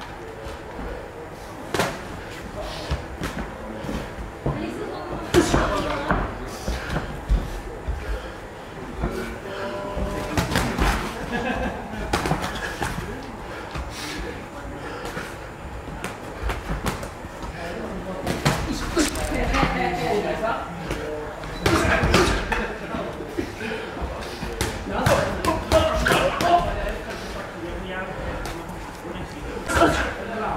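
Boxing gloves landing on gloves, arms and headgear during sparring: a run of sharp slaps and thuds at irregular intervals, coming in flurries, with the echo of a large hall.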